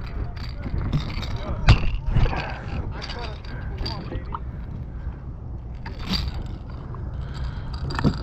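Metal pliers clicking and scraping against the hooks of a plug lure while unhooking a bluefish, with one sharp click a little under two seconds in.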